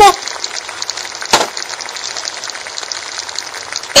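Octopus-and-tomato sauce sizzling steadily in a metal pan on a stove burner, with a fine, even crackle. A single sharp tap comes about a second and a half in.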